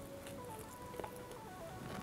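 Quiet background music: a simple melody of single held notes stepping up and down.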